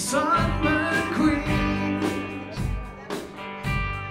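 Live rock band playing: electric guitars over a steady drum beat.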